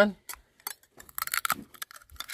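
Serrated kitchen knife scraping and clicking against a cooked sea snail's spiny shell: a quick run of short scrapes and taps, thickest in the second half.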